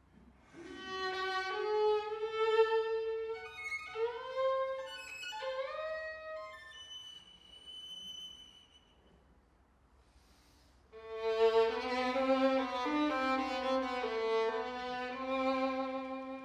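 Violin playing a slow, singing melody with slides between notes. The line trails off into a near-silent pause about eight seconds in, then resumes louder at about eleven seconds with a second, lower voice sounding beneath it.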